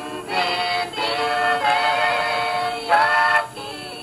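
Gospel singing by a vocal group, with long held notes that waver slightly in pitch and a short break between phrases near the start and near the end.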